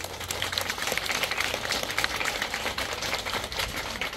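Crowd of children and adults applauding, a dense, even clatter of many hand claps.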